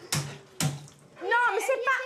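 Water splashing in a bathtub, two sharp splashes close together, then a voice talking from a little past halfway.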